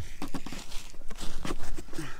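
Irregular short crunches and knocks as a bare hand works at the snow-packed rear track and suspension of a snowmobile, over a low steady rumble.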